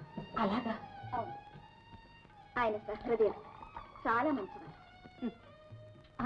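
A woman's voice speaking in short, expressive film-dialogue phrases, with pauses between them and faint background music underneath.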